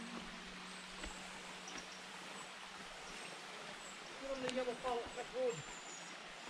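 Faint steady rush of a shallow woodland stream, with a person's voice heard briefly and quietly about four seconds in.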